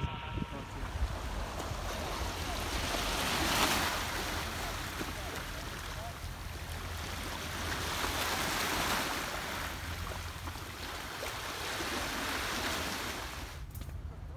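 Small waves washing up on a sandy, boulder-strewn beach, surging and ebbing about every four to five seconds, with wind rumbling on the microphone. The sound cuts off suddenly near the end.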